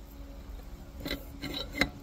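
A few light metal clicks and clinks, the sharpest near the end, as a steel mower idler arm and hand tools are handled at a bench vise, over a steady low hum.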